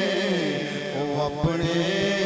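A man's voice chanting a devotional naat in long, gliding melodic phrases, with a couple of short low thumps about halfway through.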